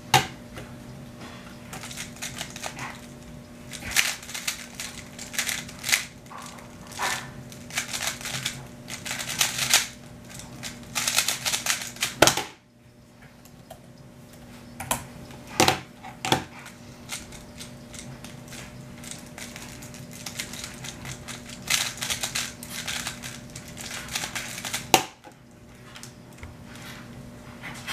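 Rapid plastic clicking and clattering of a 3x3 speedcube's layers being turned during a solve, in dense runs that stop abruptly about halfway through. Laptop keyboard keys are tapped after the stop, and the cube clicking resumes later.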